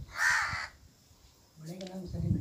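A single bird call, about half a second long, right at the start, followed by a pause and then a person's voice near the end.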